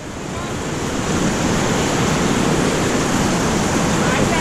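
Roar of white-water rapids rushing around an inflatable raft, growing louder over the first second and then steady.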